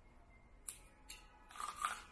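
Two light clicks, then a short burst of crisp crunching near the end as teeth bite into a raw red radish.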